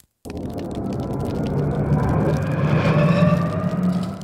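Cinematic fire-burst sound effect: a rumble with a faint rising whine that starts suddenly and swells louder for about three seconds, building to a peak near the end.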